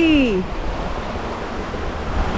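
A brief voice with falling pitch right at the start, then the steady rush of a shallow river running over rocks and small rapids.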